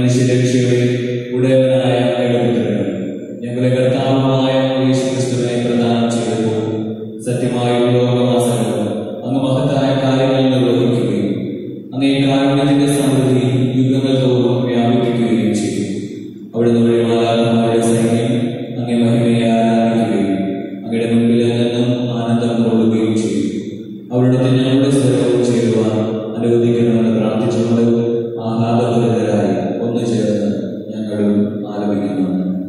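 A man's voice chanting a liturgical prayer into a microphone, in held, sung phrases of a few seconds each with short breaks between them.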